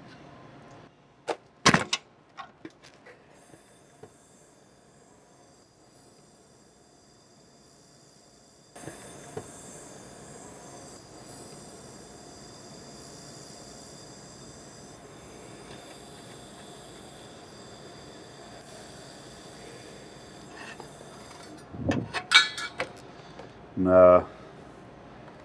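IPG LightWELD XR handheld laser welder fusion-welding a 2 mm 5000-series aluminium T-joint with no filler wire: a steady hiss starts about nine seconds in and holds for about twelve seconds before stopping. There are a few sharp metal clinks near the start, and again near the end, as the aluminium pieces are handled on the steel welding table.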